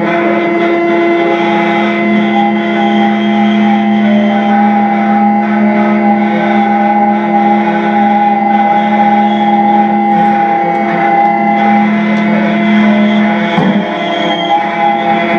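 Loud sustained electronic drone of several layered steady tones from an electric guitar laid flat on a table, fed through effects pedals and homemade circuit boards into an amplifier. One upper tone drops out about twelve seconds in, and the sound wavers briefly just before the end.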